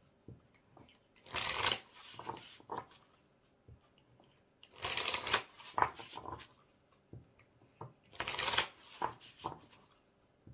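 A deck of tarot cards shuffled by hand: three brisk bursts of shuffling, about a second in, in the middle and near the end, with light taps and clicks of the cards between them.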